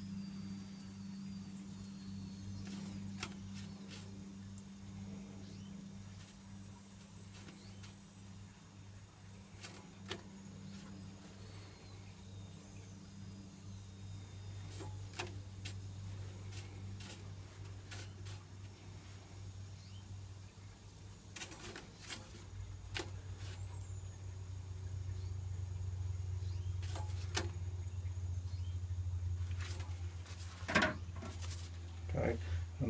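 An oil-coated Punjabi-style poppadom crackling as it toasts over the flames of a high-output wok gas burner, with scattered sharp pops. A steady low hum from the burner runs underneath and grows louder about three-quarters of the way through.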